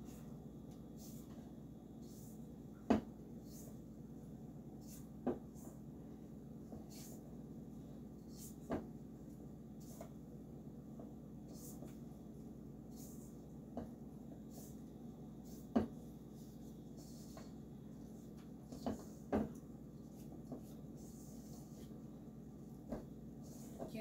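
Utensil stirring stiff cookie dough in a stainless steel mixing bowl: quiet scraping with about eight short knocks of the utensil against the metal bowl a few seconds apart, over a steady low hum.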